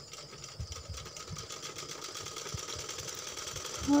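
Domestic sewing machine stitching steadily, a fast, even run of needle strokes, while a border strip is sewn onto cloth.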